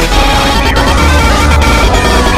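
Several soundtracks playing over each other at once: loud music layered into a dense, clashing jumble.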